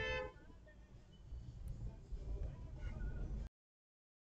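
A car horn gives one short toot, from the Audi driving close behind. A low rumble of road noise follows, and the sound cuts off suddenly near the end.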